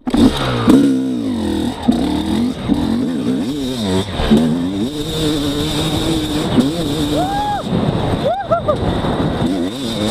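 2017 Yamaha YZ250X two-stroke dirt-bike engine, fitted with an XTNG GEN3+ 38 metering-rod carburettor, pulling away and accelerating hard. Its pitch rises and dips with the throttle as the bike picks up speed.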